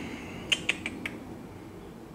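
Four short, light clicks in quick succession about half a second in, over a steady low background hiss.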